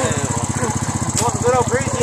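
A small engine idling steadily with a fast, even pulse, while people exclaim and laugh over it.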